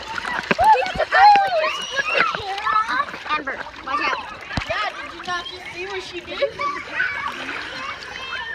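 Pool water splashing and sloshing around a phone held at the surface, with several voices talking at once, all muffled by a waterproof phone case.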